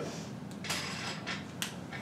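Quiet room tone with a few faint, scattered clicks and light creaks.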